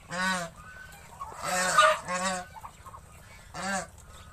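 Domestic geese honking, four or five separate calls spaced about a second apart.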